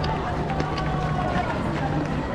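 Marathon runners' footsteps on cobblestones amid the voices of spectators and runners, with a steady low hum underneath.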